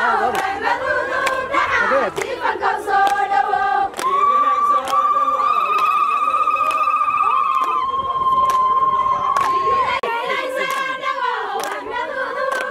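A crowd singing together with steady hand clapping. From about four seconds in, a high, rapidly trilling ululation is held for about six seconds over the singing.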